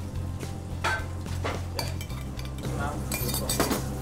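Restaurant kitchen clatter: scattered clinks of metal spoons, pots and pans, over a low, steady music bed.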